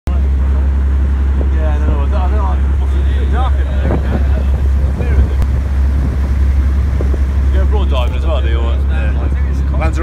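A water taxi's engine running steadily under way, a constant low drone, with water rushing past the hull. People talk over it at times.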